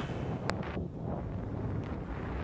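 Wind rushing over the microphone of a camera on a moving motorcycle: a steady low rumble, with one short click about half a second in.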